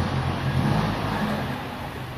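Chevrolet S10 Executive 4x4 pickup's 2.8 diesel engine running at a low, steady idle as the truck creeps forward.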